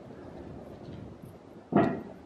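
Large wooden gate door being opened, with a short loud creak near the end.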